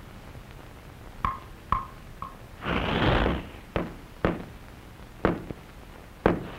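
Cartoon sound effects for a clock striking midnight: three short, high, bell-like pings about half a second apart, then a brief hissing whoosh, then a few sharp knocks.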